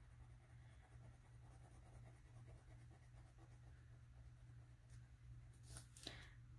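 Faint scratching of a colored pencil colouring in squares on paper, over a low steady hum.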